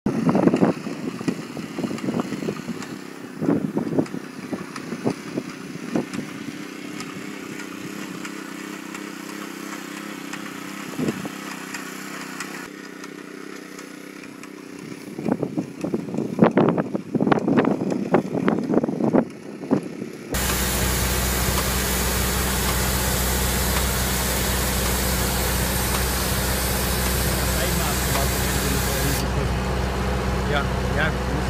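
People talking over the steady hum of a walk-behind road line-striping machine. About twenty seconds in, this cuts to a ride-on road-marking machine's engine running steadily, with a hiss of spraying paint.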